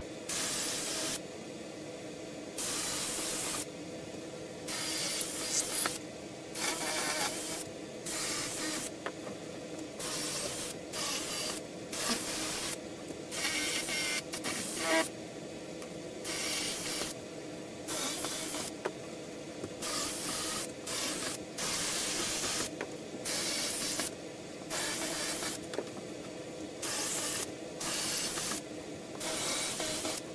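Cordless drill-driver running in about twenty short bursts of under a second each, with pauses between, as it drives fasteners up into the underside of a tabletop.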